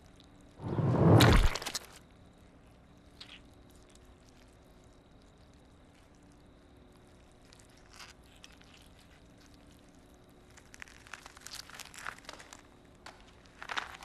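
Sound effects for a chameleon's tongue strike: one loud, sudden whoosh about a second in. A run of small crackling crunches follows near the end as the chameleon chews the insect it caught, over a faint steady hum.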